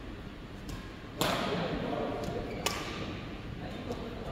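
Badminton rackets striking a shuttlecock during a rally: a loud hit about a second in, then a sharp crack about a second and a half later. Fainter hits sound from other courts.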